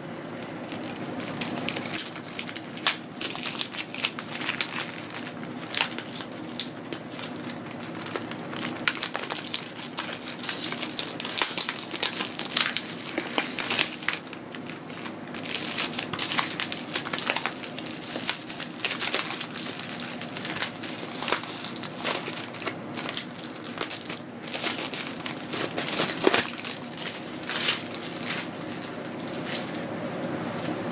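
Plastic shrink-wrap being torn and peeled off a CD case, with irregular crinkling and crackling that goes on all through, in sharper bursts here and there.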